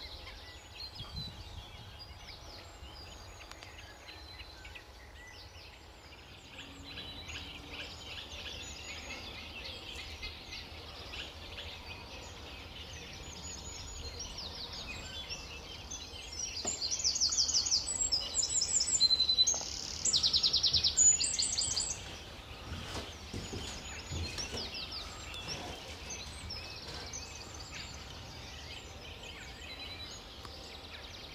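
Songbirds singing. About halfway through, a small brown songbird gives a loud, rapid trilling song of about five seconds with a brief break in the middle, over quieter, continuous high chattering song from other birds.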